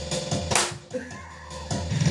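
Dubstep-style electronic track with a steady deep bass line under a beat, and a sharp drum hit about half a second in.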